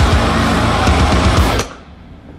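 Heavy metal song: distorted electric guitar tuned down to drop A, playing along with a drum kit. The music cuts off suddenly about one and a half seconds in.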